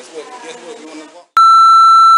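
Muffled voices, then after a brief dropout a single loud, steady electronic beep at one pitch, lasting about a second and starting and stopping abruptly.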